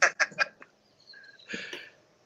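A man's brief laugh over a video call: a few quick bursts of laughter, then a short breathy hiss near the end.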